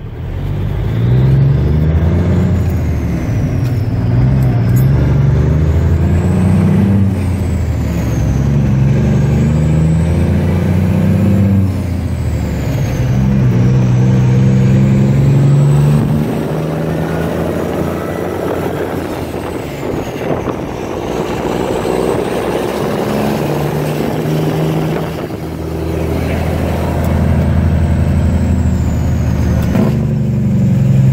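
1977 Peterbilt 359's Cummins diesel pulling away and accelerating through the gears of its 10-speed transmission. The engine pitch climbs and then drops back at each of several shifts, with a high turbo whistle rising and falling over it, heard from inside the cab.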